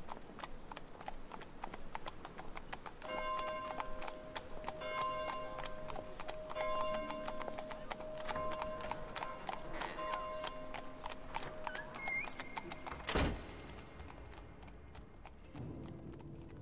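Ambient soundscape of horse hooves clip-clopping with a repeated ringing melody over them. A single heavy thud comes about thirteen seconds in, after which the sound turns muffled.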